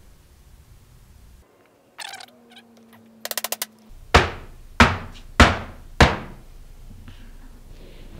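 An MDF mold box full of freshly poured silicone is knocked down on the workbench four times, about 0.6 s apart, to work air bubbles out of the silicone. Before the knocks come a short hum and a quick run of clicks.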